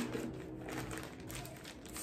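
Soft crinkling and rustling of a small mail packet as it is handled to be opened.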